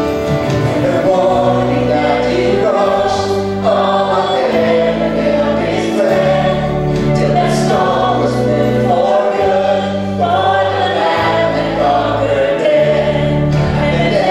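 Live worship band: male and female voices singing a contemporary hymn over acoustic guitar, bass guitar and piano, the bass changing note every second or two.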